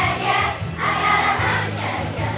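Children's choir singing a holiday song, with jingle bells shaken along in strokes about once a second.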